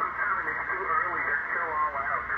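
A distant amateur station's voice on 20-metre single sideband, heard through the transceiver's speaker: narrow and thin, cut off above the voice band, over a faint background hiss.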